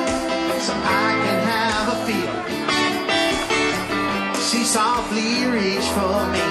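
Live country-rock band music: strummed acoustic guitar with an electric lead guitar playing bending, wavering notes, and steady rhythmic strokes in the highs.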